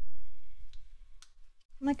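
A dull bump, then a couple of faint clicks as a paintbrush works paint on the palette. A woman starts speaking near the end.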